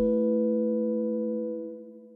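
The final held chord of a short music jingle: a few steady, pure tones sounding together, fading away near the end.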